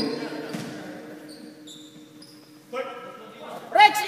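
Sneakers squeaking on a gym's basketball court during play: a few short, high squeaks in the middle, between spoken words.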